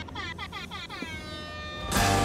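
A quick run of falling electronic chirps, about six a second, each sliding down in pitch, ending in one held tone. Loud music comes in right at the end.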